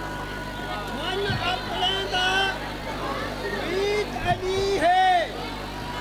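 A zakir's voice chanting a melodic recitation through a public-address system, in long drawn-out phrases that swoop up and arch down, with a steady low hum beneath.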